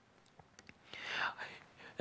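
A man's soft whispered murmur about a second in, after a few faint clicks; otherwise quiet.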